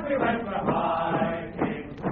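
Voices singing, with notes held for up to about a second at a time.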